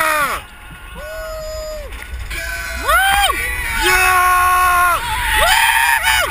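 Roller coaster riders screaming as the train tips over the top into the drop: a run of long held screams from several voices at different pitches, one after another.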